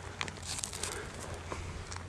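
Faint scraping and a few light clicks of gravel and small stones as an agate is dug out of a gravel pile.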